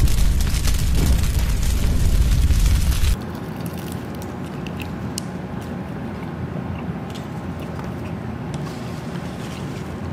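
A loud, deep rumbling boom-like sound effect lasting about three seconds, which cuts off suddenly. After it comes a quieter steady low background with a few faint clicks.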